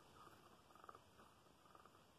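Faint scratching of fingers on the ribbed cardboard texture panel of a board book: a few short, quiet rasps, mostly in the first second.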